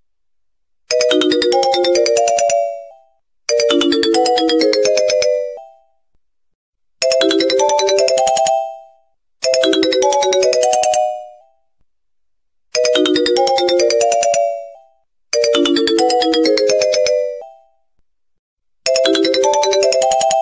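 A short ringtone-style chime melody, a quick upward run of bright bell-like notes, played on a loop: seven times, each phrase fading out before a brief silence and the next repeat.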